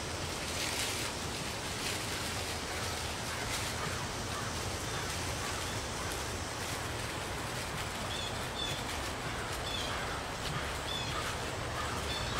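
Thin clear plastic bag strip crinkling softly as it is handled and wrapped around a tree's roots, over a steady outdoor background with a few faint, short high chirps.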